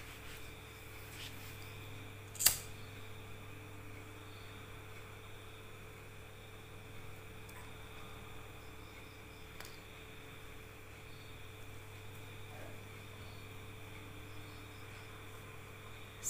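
Steady low background hum of a small room, with one sharp click about two and a half seconds in and a few faint handling ticks later.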